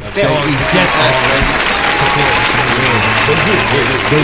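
A loud burst of applause and cheering that starts suddenly and fades near the end, with men talking over it.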